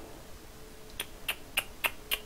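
Four quick computer mouse clicks, about a third of a second apart, starting about halfway through, over a faint steady hum.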